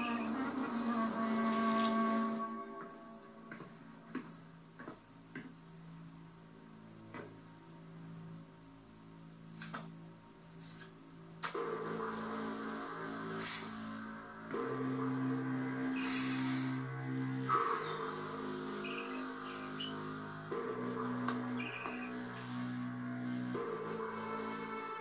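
Dramatic TV-series background music, slow held notes and chords that swell to a fuller, louder chord about halfway through, heard through a television's speaker. A few short hissing sounds cut across it in the second half.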